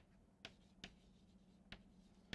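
Chalk tapping faintly on a chalkboard during writing: three soft, short ticks at uneven spacing.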